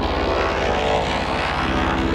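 Effects-processed, distorted logo soundtrack: a dense, steady buzzing drone over a rapid, even low pulse that sounds like a propeller engine.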